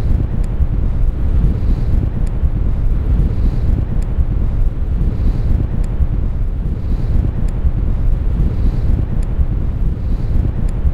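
Wind buffeting an outdoor camera microphone on an open beach: a loud, steady, rough low rumble with no break.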